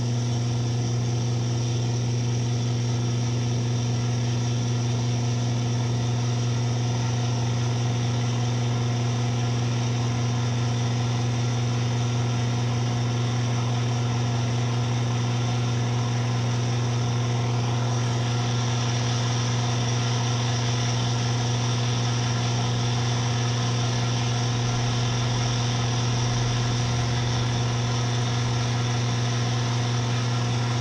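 Steady, loud electronic noise drone: a strong low hum with overtones over a hiss that fills the whole range, holding a constant level throughout.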